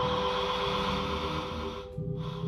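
Experimental ambient electronic music: steady held drone tones over a choppy low bass, with a hissy noise layer on top. The upper sounds drop out briefly near the end.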